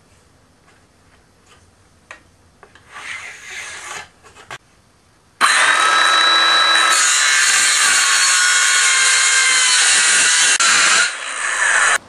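After a few seconds of faint handling sounds, a circular saw starts suddenly about five seconds in. It runs loud and steady with a whining motor tone as it cuts a 3-inch strip off the end of a plywood panel, dipping briefly near the end.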